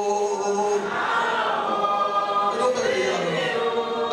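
A church choir of women's and men's voices singing together, holding each note for about a second before moving to the next.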